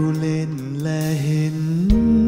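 Orchestral accompaniment between sung lines of a Thai ballad: a sustained melodic line with a slight waver, with a low bass note and a new higher note coming in near the end.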